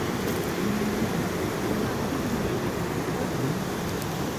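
Mountain stream rushing over rocks and small cascades, a steady, even noise of running water.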